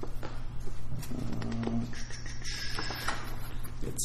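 A house cat meowing: a short call about a second in, then a longer, higher call from about two to three seconds in, over a steady low hum.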